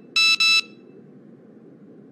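An electronic device giving a high double beep about a quarter second in, two short identical steady tones. It is followed by a faint, even low hum.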